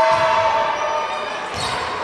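Live sound of an indoor volleyball rally in a sports hall: players' and spectators' voices echoing, with a sharp ball strike about one and a half seconds in.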